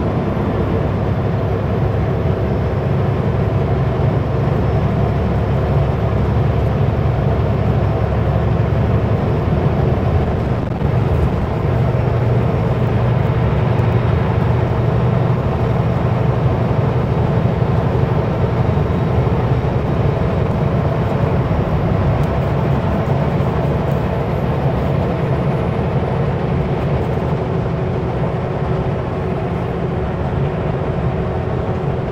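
Kenworth W900L semi truck driving at a steady speed: a continuous low diesel engine hum mixed with road and wind noise. A brief dip comes about ten seconds in, after which the engine hum is somewhat stronger.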